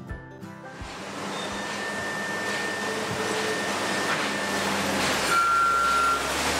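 A short music sting ends in the first second. Then a Caterpillar wheel loader works a trash pile: steady engine and machinery noise that grows gradually louder, with a high steady whine in the middle and a reversing-alarm beep starting near the end.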